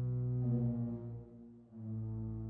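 Large pipe organ playing sustained chords over a held low bass note. The chord shifts about half a second in, the sound dies away briefly after a second, and a new full chord comes in near the end.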